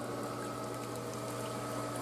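Garden pond's water pump humming steadily, with the light trickle of its small waterfall.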